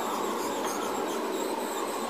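Steady background noise in a pause between speech: an even hiss and hum with no distinct events.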